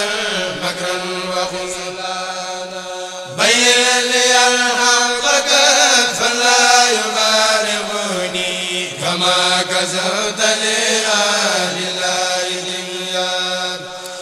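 A Mouride kourel of men chanting an Arabic khassida in unison into microphones, with long, drawn-out held notes. A new phrase comes in loudly about three seconds in, and the voices ease off just before the end.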